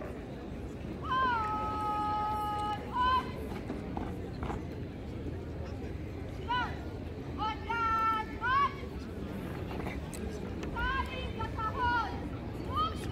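A girl's voice shouting drill commands: a long drawn-out held call about a second in, ending in a short sharp word, then more short rising commands in quick groups later on.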